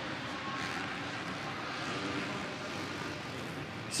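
Supercross motorcycle engines running hard, heard through a rider's onboard camera among a pack of bikes: a steady, dense engine noise.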